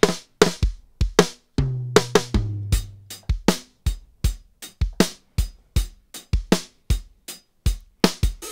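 Dry, close-miked acoustic drum kit playing a beat of kick-drum and snare hits, several strikes a second, with a low drum ringing on briefly about two seconds in.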